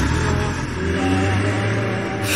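Car engine sound effect running steadily with a low hum as the car drives off.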